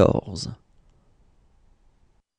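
A voice finishing a spoken word, ending about half a second in, then near silence.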